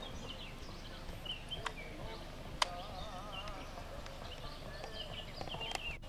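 Small birds chirping and calling in short repeated notes, with a wavering call just after a single sharp click about two and a half seconds in.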